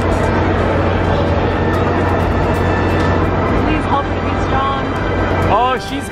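Carnival ride-area noise: a steady loud machine hum from the rides with music and voices over it, and a few short voice glides near the end.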